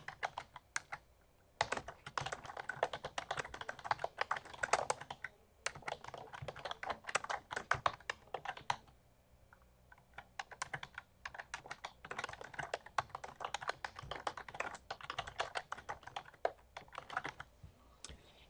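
Typing on a computer keyboard: quick runs of keystrokes with a few short pauses between them.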